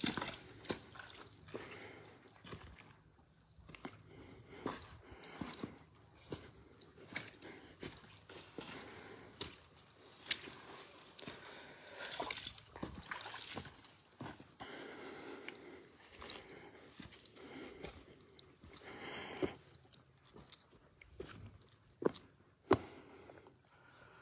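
Irregular footsteps on stony, rubble-strewn ground, with soft knocks and scuffs at an uneven pace, over a quiet outdoor background.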